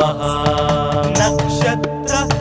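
Devotional music for a chanted Sanskrit hymn: a long held melodic note over a steady drone.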